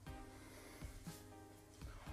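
Faint background music with soft held tones, with a few soft low knocks as a ceramic baking dish is picked up and handled.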